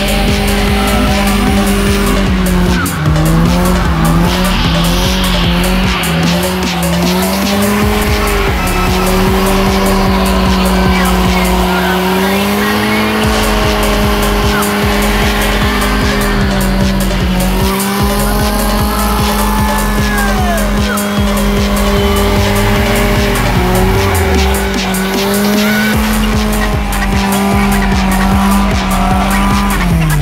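A drift car's engine held at high revs during a burnout, its pitch wavering up and down, with the rear tyres squealing, over music with a steady beat.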